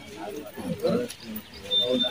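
Indistinct voices of people talking, with a high, steady, whistle-like tone starting near the end.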